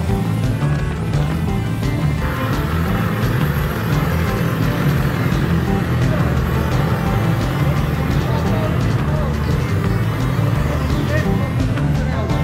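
Background music laid over the ride footage, playing steadily throughout.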